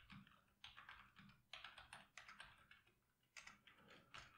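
Computer keyboard being typed on, faint, in quick runs of keystrokes separated by short pauses.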